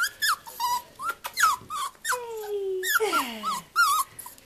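Several young puppies yipping and whining in quick succession: a string of short, high-pitched squeaks, with two longer falling whines in the middle, as they tussle together.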